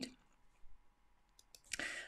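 Near quiet with a few faint small clicks, then a short breath in near the end.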